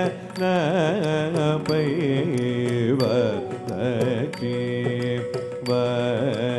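Live Carnatic music for a Bharatanatyam varnam: a voice singing ornamented phrases that slide and waver in pitch over a steady drone, with sharp percussive clicks throughout. The music drops away briefly just after the start.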